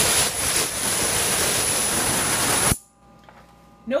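Qsonica Q700 cup horn sonicating its water bath through a titanium ultrasonic horn: a loud cavitation hiss with a thin, steady high-pitched whine on top. It cuts off suddenly a little under three seconds in.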